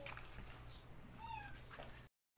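A faint, short animal cry about a second and a quarter in, over a low steady background hum.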